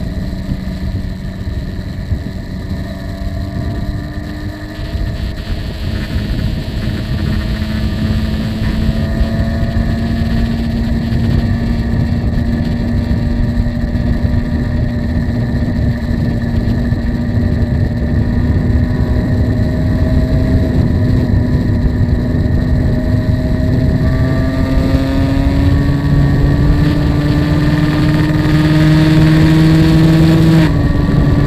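Yamaha RXZ's 135 cc two-stroke single engine running flat out at high speed on the highway, its pitch climbing slowly as it gains speed, with heavy wind rush over the microphone.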